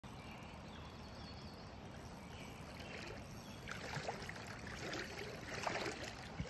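Shallow lake water splashing and lapping, with a busier run of small splashes from about three and a half seconds in.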